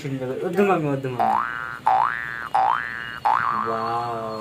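A comic 'boing' sound effect: three quick rising springy glides, one after another, then a falling tone, following a moment of talk.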